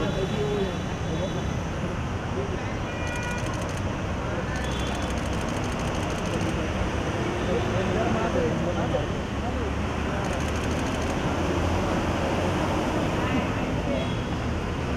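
Busy street ambience: steady traffic noise with indistinct voices talking in the background, and a few short runs of rapid faint high clicking.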